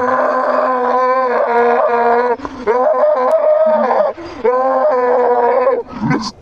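A teenage boy screaming in rage: three long yells, each held at a fairly steady pitch. The first lasts over two seconds, and the last ends just before the close.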